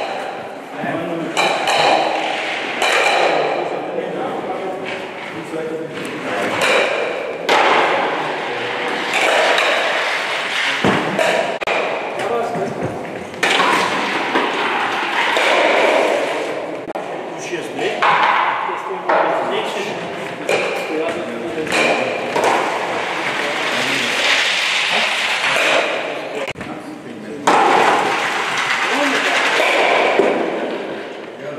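Indistinct voices echoing in a large sports hall, with a few sharp knocks as curling stocks (Eisstöcke) are thrown and strike other stocks on the lanes; the loudest knock comes near the end.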